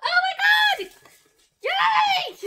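A woman squealing with excitement: two high-pitched wordless squeals, the first at the start and the second beginning near the end, with a short silence between.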